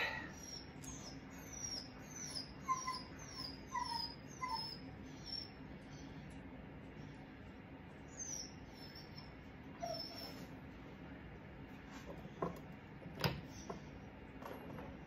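A series of short, high, falling squeaks from an animal, about three a second, in two runs with a pause between them, over a faint steady hum. Two knocks come near the end.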